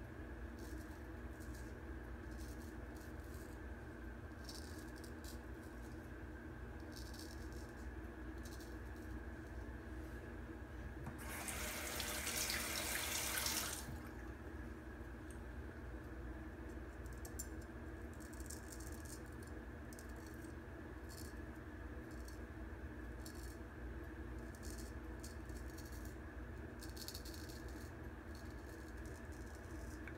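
Straight razor scraping through lathered stubble in many short, faint strokes, over a steady low hum. About eleven seconds in, a tap runs for about two and a half seconds, likely to rinse the blade.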